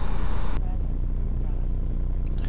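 Steady low hum with hiss from an open webcast audio line; the hiss thins out abruptly about half a second in, as if one line closes and another opens.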